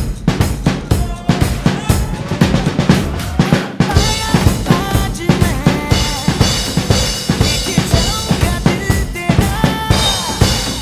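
Acoustic drum kit played in a fast, busy groove of kick drum, snare and cymbal hits along with a recorded backing track. About four seconds in, the track's melody and a thicker cymbal wash join the drums.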